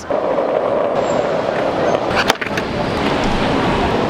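Loud, steady city street noise, a dense rumble and hiss, with a sharp click a little past two seconds in.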